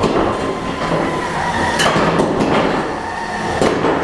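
3 lb full-body spinner combat robot whirring steadily, with several sharp metal-on-metal hits in the second half as the robots collide.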